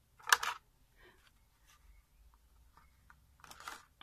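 A small paper gift box being handled and set down on a craft board: a short rustling scrape about a third of a second in, then faint light taps and a softer rustle near the end.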